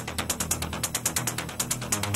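Electronic dance music in a DJ mix thinning to a break: the bass drops away and a fast, even clicking percussion roll of about ten hits a second carries on, quieter than the full track around it.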